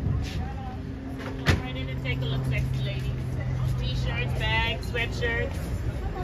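Busy outdoor street ambience: people talking in the background over a steady low hum like an idling engine, with a single sharp knock about a second and a half in.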